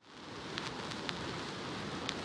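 Faint steady hiss fading in, with a few soft clicks scattered through it.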